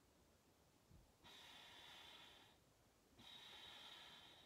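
Faint breathing: two long out-breaths through the nose, each about a second and a half, with a short pause between them. This is the two-stroke exhale of a paced sniff-breathing exercise.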